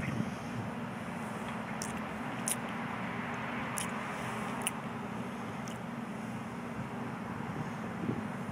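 Steady low drone of distant road traffic, with a few faint, short high clicks scattered through it.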